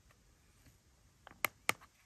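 Near silence, then two or three light clicks close together about a second and a half in: buttons on the soundbar's remote control being pressed to switch its input mode.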